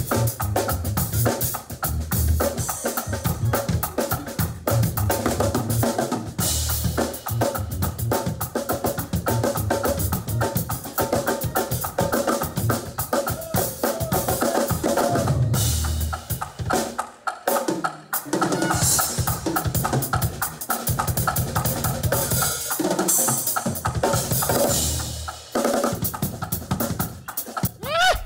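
Live drum kits played in a fast drum shed: rapid snare and tom fills, rimshots and cymbal crashes over a driving kick drum, with keyboard chords underneath. The playing breaks off briefly about seventeen seconds in, then picks up again.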